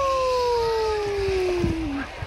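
A person's long whoop that rises briefly, then slides steadily down in pitch for about two seconds before breaking off.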